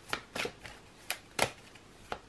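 A deck of tarot cards being shuffled by hand: a handful of short, uneven swishes and slaps of cards sliding against each other.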